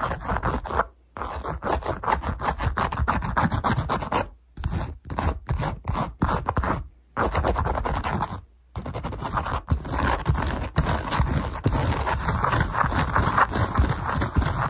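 Fast, aggressive scratching and rubbing right at the microphone, a dense run of quick strokes broken by a few sudden short gaps.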